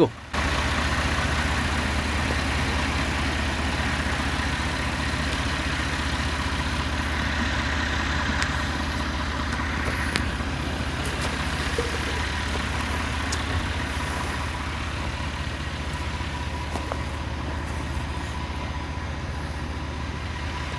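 A steady low engine rumble, like a motor vehicle idling, running through with little change, with a few faint clicks.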